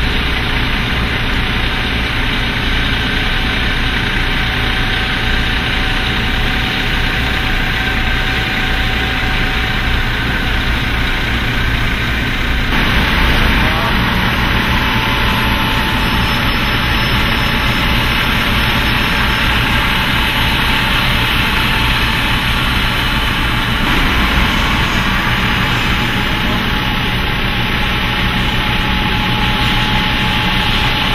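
Diesel tour coach engine running steadily at low speed as the bus creeps forward, a constant deep rumble. The sound shifts abruptly about thirteen seconds in.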